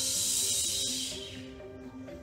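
A woman's forceful hissing exhale through the mouth during the arm pumps of the Pilates hundred, fading out after about a second and a half, over background music.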